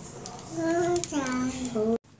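A voice singing a few long, held notes, starting about half a second in.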